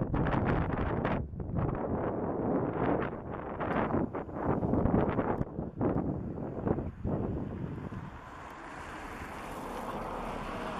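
Wind buffeting the microphone in irregular gusts, easing to a softer, steadier hiss about eight seconds in.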